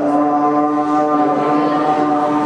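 A young man's voice through a microphone and PA, holding one long steady note that starts at the beginning and runs past the end.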